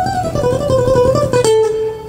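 Acoustic guitar played with fast alternate picking: a rapid run of notes stepping downward, ending about a second and a half in on one held note.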